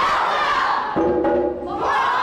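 A big group of children shouting together in rising whoops as they spring up from a crouch, once at the start and again near the end. In between, about a second in, a held music chord sounds.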